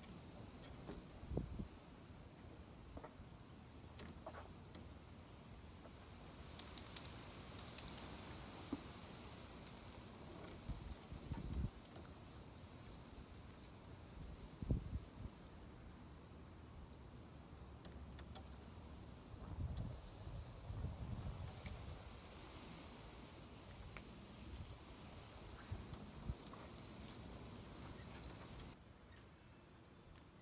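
Faint, scattered clicks and a few low thumps from a car wheel and its lug nuts being handled by hand during a wheel change, over light outdoor background noise.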